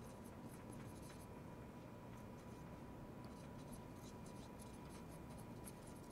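Faint strokes of a marker writing on a glass lightboard: many short, quick ticks as words are written out.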